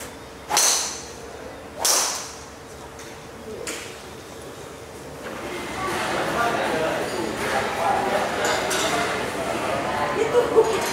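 Sharp cracks of a driver striking golf balls: two loud strikes about a second and a half apart, then a fainter one. About halfway through, a steady babble of many voices in a large room takes over.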